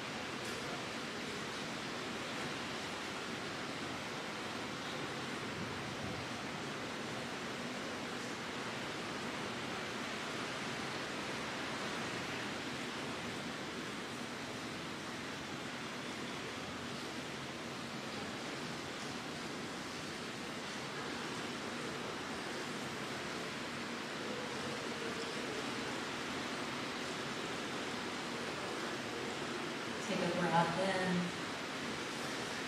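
Steady rain falling in the background, heard as an even hiss.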